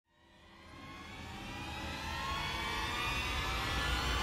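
Cinematic title-intro sound effect: a rising swell of layered tones over a low rumble. It fades in from silence and grows steadily louder and higher.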